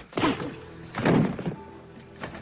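Two punches landing with heavy thuds, about a second apart, the staged punch sound effects of a film fight, over low sustained background score.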